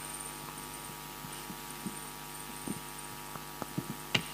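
Steady electrical hum from a microphone and sound system with no one speaking, with a few faint soft knocks near the end.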